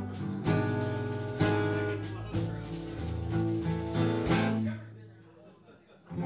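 Live band instrumental passage: acoustic guitar strumming chords over bass, a chord about once a second. The chords ring out and fade away near the end.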